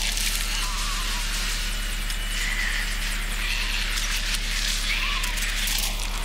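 A TV drama's soundtrack playing: a steady noisy wash with faint, muffled voices under it.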